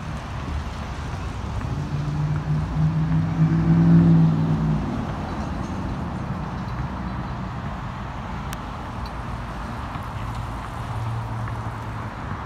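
A motor vehicle's engine passing on a nearby road, a low humming drone that builds to its loudest about four seconds in and then fades, over a steady outdoor rumble; a fainter engine hum returns near the end.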